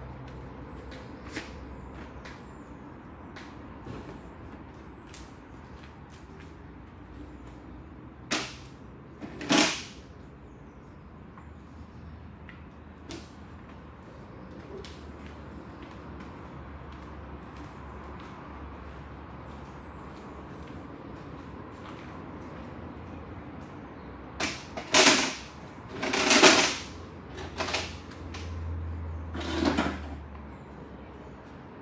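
Folding wooden tables and benches being handled and moved, giving occasional loud knocks and clatters: two about a third of the way in, a cluster near the end. Under them runs a steady low hum with faint ticks.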